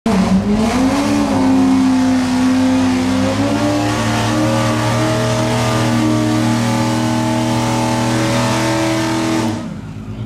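Acura NSX's twin-turbo V6 revved and held at high, steady revs, stepping up in pitch about a second in and again a couple of seconds later, then dropping away suddenly near the end.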